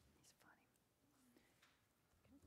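Near silence: low, indistinct murmuring of voices, too faint to make out words.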